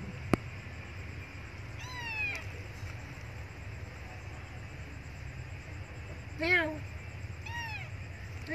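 Cat meowing: three short meows, each rising and then falling in pitch, the loudest about six and a half seconds in, with a sharp click just after the start.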